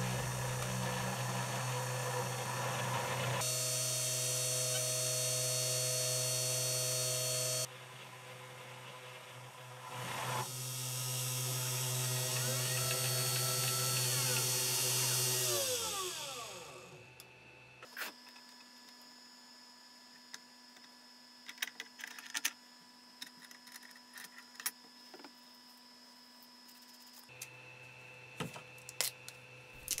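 A 3018 CNC router's small spindle motor runs with a steady hum while the engraving bit cuts into a brass plate, with a high hiss from the cut that drops away and comes back. About sixteen seconds in, the motor spins down with a falling whine, leaving a faint hum and scattered light clicks.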